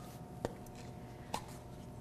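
Quiet room tone with a faint steady hum, broken by two small clicks: one about half a second in and another about a second later.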